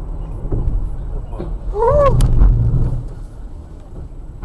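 Low rumble of a car's engine and road noise heard from inside the cabin while driving, swelling for about a second midway. About two seconds in, a short voice sound rises and falls in pitch, followed by a sharp click.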